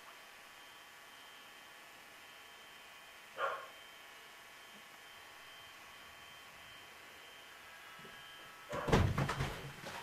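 A newborn cocker spaniel puppy gives one short squeak about three and a half seconds in, over a faint steady hum. Near the end comes a loud burst of knocks and rustling.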